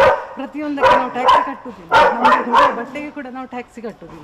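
A woman talking while a dog barks several times in the first three seconds.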